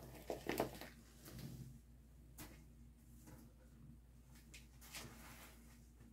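Quiet room tone with a low steady hum and a few faint clicks and taps: a couple just after the start, one at about two and a half seconds and a small one at about five seconds.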